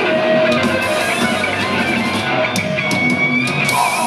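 Thrash metal band playing live: distorted electric guitars, bass guitar and drum kit in an instrumental passage with no vocals. A held high note rings out in the last second.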